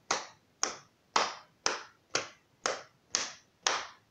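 Hands slapping out a steady walking beat: eight sharp pats, about two a second.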